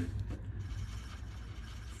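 Erasable felt-tip highlighter rubbing over paper as a circle is coloured in, faint, over a steady low hum.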